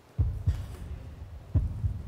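Suspense heartbeat sound effect: low double thumps, lub-dub, the pairs repeating about every 1.3 seconds, heard twice.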